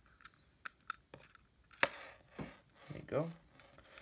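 Small sharp clicks and taps of a clear plastic Digivice toy being handled and pried at while its battery cover is taken off, the loudest click a little under two seconds in.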